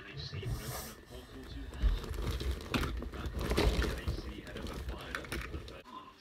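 Handling noise from a phone camera being picked up and moved: low rumbling bumps and scraping rubs against the microphone, with scattered light clicks.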